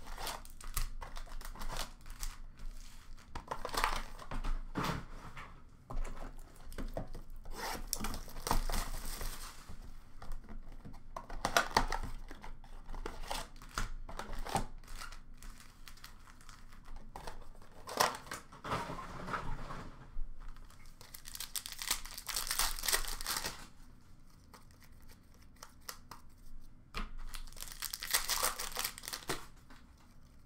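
Hockey card blaster boxes and foil card packs being torn open by hand: bursts of cardboard and wrapper tearing and crinkling, with small clicks and rustles as cards are handled between them.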